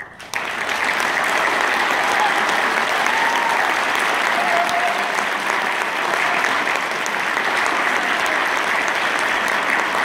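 Audience applauding. It breaks out abruptly and stays full and steady, with a few voices calling out partway through.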